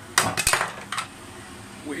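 Wooden spatula knocking against a plastic food container: a quick clatter of several knocks in the first half-second and one more about a second in, over a steady low hum.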